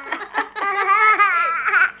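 A baby and a young girl laughing, high-pitched and wavering, growing stronger about halfway through.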